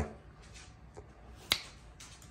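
A single sharp click about one and a half seconds in, with a fainter tick half a second before it, over quiet room tone.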